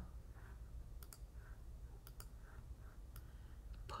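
A few quiet computer mouse clicks, spaced out, as a colour swatch is picked in design software.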